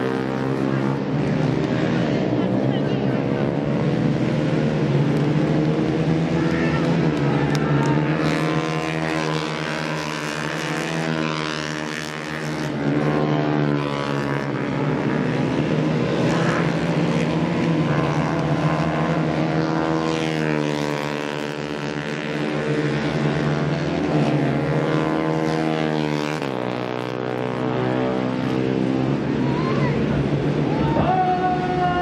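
Racing motorcycle engines revving hard, their pitch climbing and dropping again and again as the bikes accelerate, shift gear and pass along the circuit.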